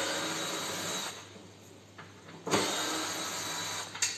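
Cordless drill-driver turning screws in a washing machine's sheet-metal cabinet: two short runs of the motor, each about a second, one at the start and one a little past halfway.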